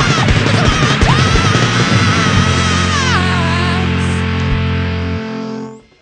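Punk band playing live with loud distorted electric guitar, bass and drums, ending a song: the drumming stops and a last chord is held ringing while a wavering high note slides down, then it all cuts off just before the end.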